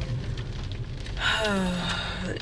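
Low steady rumble inside a car's cabin. A little over a second in, a woman makes a drawn-out wordless vocal sound that drops in pitch and then holds.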